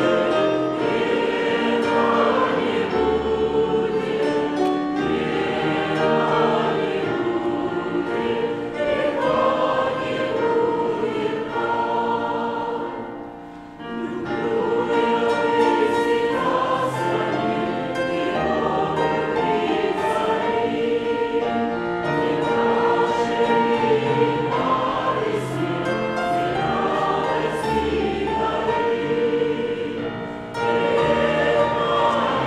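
Choir singing a Russian hymn, the chorus and then a verse, with a short break in the singing about halfway through.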